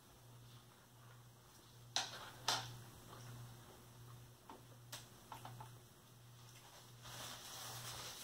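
Faint chewing of a mouthful of chili cheeseburger: a few soft mouth clicks and smacks, a couple of them sharper, over a steady low hum. A soft breath near the end.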